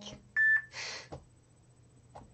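A short electronic beep, a single steady high tone lasting about a third of a second, about half a second in. It is followed at once by a brief sniff through the nose, someone smelling beard balm on their hands.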